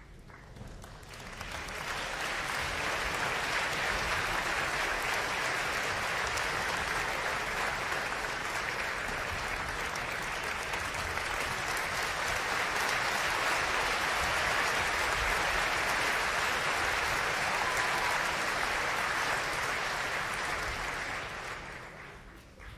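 Theatre audience applauding the conductor's entrance into the orchestra pit. The applause swells over the first couple of seconds, holds steady, and dies away just before the end.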